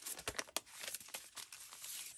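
Paper rustling and crinkling as a twine-tied bundle of craft papers and cards is handled, with a cluster of sharp crackles in the first half second and softer ones after.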